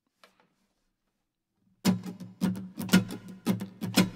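Acoustic guitar starting to strum the song's intro about halfway in, in a steady rhythm of roughly two strums a second, after a near-silent pause.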